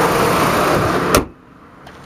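Chrysler Sebring's 2.4-litre four-cylinder engine running steadily, heard close up under the open hood, then a single sharp slam a little over a second in as the hood is shut, after which the sound drops off sharply and stays quiet.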